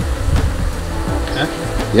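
Swarm of African honeybees (Apis mellifera scutellata) buzzing as they fly around the hive, with background music mixed in.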